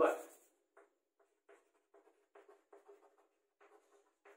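Chalk writing on a blackboard: a string of short, faint scratching strokes as words are written out by hand.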